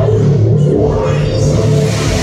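Electronic show soundtrack with a steady low bass drone; a wash of hissing noise comes in about a second and a half in.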